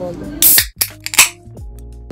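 Glitch transition sound effect: three sharp bursts of static with low falling sweeps, then a short buzzing electronic tone that cuts off near the end, over background music.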